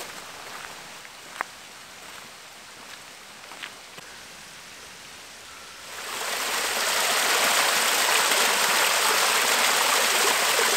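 The steady rush of a small waterfall running down a rock face. It fades in about six seconds in and holds loud and even; before it there is only faint outdoor background.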